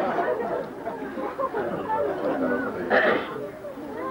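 Speech only: a person talking, with other voices chattering over it.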